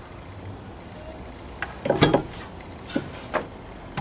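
Knocks and clatter of an old metal fan being handled and set down on a wooden deck bench, loudest about two seconds in, with two lighter knocks a second later, over a low steady hum.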